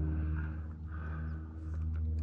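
A steady low mechanical hum, with soft rushing noise coming and going over it.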